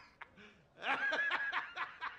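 A man laughing, a quick run of short 'ha' pulses beginning just under a second in.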